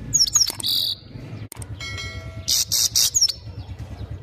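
Caged goldfinch singing a fast twittering song of high, buzzy notes, loudest in two bursts near the start and about three seconds in.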